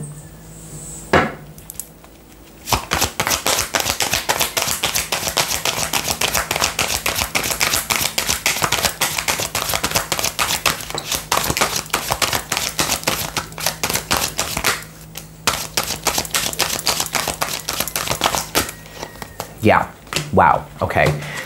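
A deck of tarot cards being shuffled by hand: a rapid, continuous patter of card clicks starting about three seconds in, a brief break about fifteen seconds in, then a few more seconds of shuffling before it stops.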